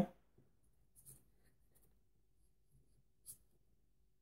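Faint scratching and handling of small metal reloading parts as fingers fumble a shotshell primer and hull onto a Lee Loader 410 gauge priming base, with two light ticks, about a second in and near the end.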